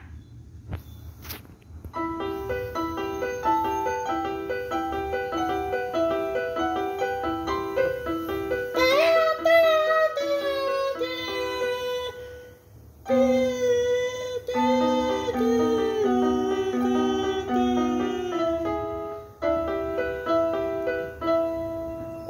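Yamaha mini keyboard played by hand: a simple melody over a steady repeating note pattern, starting about two seconds in, with a brief break about halfway through.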